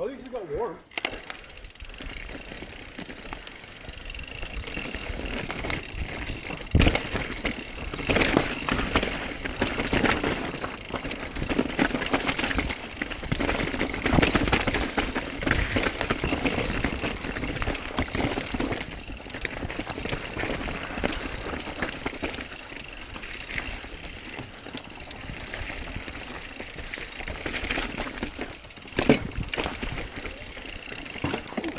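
Mountain bike riding down a rough trail: tyres rolling over dirt and rock with constant knocks and rattles from the bike, the hardest jolts about seven seconds in and near the end.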